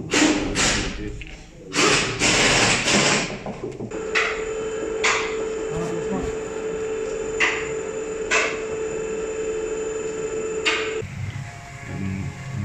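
A car lift's electric pump motor runs with a steady hum for about seven seconds as it raises a car, with sharp clicks now and then, and cuts off suddenly. Loud clattering knocks come before the motor starts.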